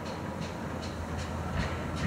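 GWR 5700-class pannier tank steam locomotive 4612 working towards the listener, its exhaust beats coming at about two and a half a second over a low rumble.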